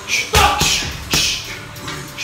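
Boxing gloves striking a punching bag in a quick series of punches, two solid hits under a second apart and a lighter one near the end, with short hissing breaths around the punches.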